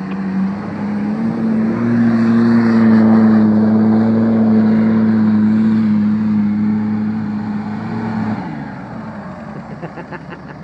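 Isuzu SUV's engine held at high revs while the vehicle spins donuts in soft sand, the note rising about two seconds in, staying steady, then dropping away about eight seconds in.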